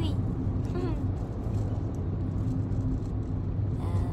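Steady low drone of a car, heard from inside the cabin.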